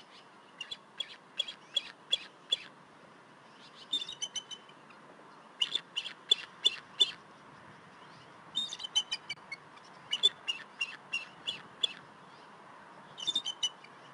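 Bald eagle calling: six bursts of high, piping chirps, each a quick run of short notes lasting up to about two seconds.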